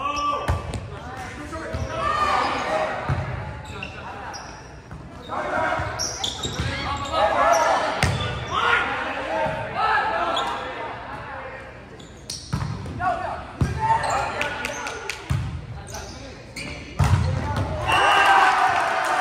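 Volleyball rally in a large gymnasium: a serve, then a string of sharp hand strikes on the ball and thumps on the court, echoing in the hall. Players and spectators shout and call throughout.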